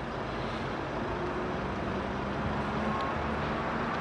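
Low, steady rumble of a train approaching in the distance, growing slightly louder.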